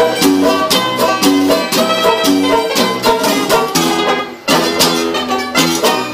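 Lively music played on plucked string instruments, guitars with mandolin- and banjo-like strings, with a quick regular beat of plucked strokes. The music breaks off briefly about four seconds in, then comes back in.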